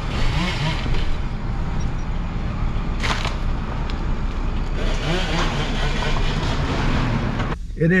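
Steady road and wind noise of a car being driven slowly, heard from inside the cab, with faint voices underneath and a short knock about three seconds in.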